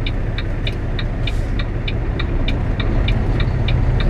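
Turn signal ticking steadily in a semi truck's cab, about three light ticks a second, as the truck makes a turn. Underneath is the low, steady rumble of the truck's engine.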